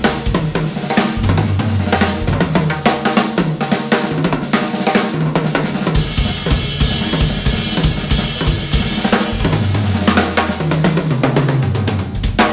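Yamaha drum kit played in a dense, driving run of strokes across snare, toms and bass drum, with cymbals and hi-hat; the cymbal wash thickens from about halfway through.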